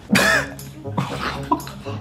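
A person's short, loud, breathy vocal burst just after the start, like a cough or a stifled laugh, followed by quieter voice sounds over soft background music.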